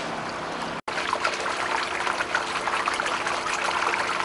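Muddy floodwater trickling and pouring into a flooded cellar entrance, with a steady low hum underneath. The sound cuts out for an instant just under a second in, then the trickling resumes.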